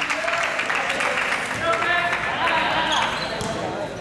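Overlapping voices of players and onlookers calling out in a gym, with a basketball bouncing on the hardwood court.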